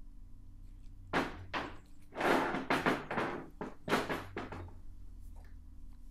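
Irregular knocks and short scrapes of metal being handled on a steel workbench as a hydraulic ram is wedged in place. They come in a cluster from about a second in until past the middle, over a faint steady hum.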